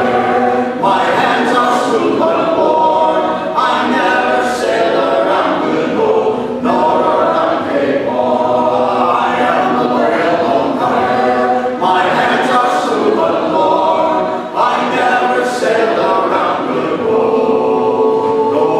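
Four men singing a cappella in close harmony, holding sustained chords in phrases broken by short breaths every few seconds.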